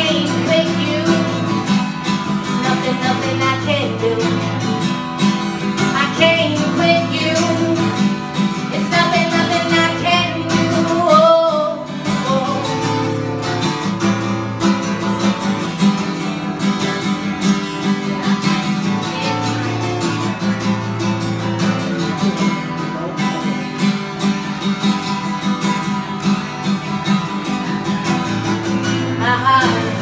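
A woman singing over her own acoustic guitar in a live performance. About twelve seconds in her voice drops out and the guitar carries on alone, and her singing comes back near the end.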